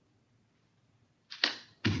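Quiet room tone, then a short, sharp swishing click about one and a half seconds in, followed right at the end by a voice starting to speak.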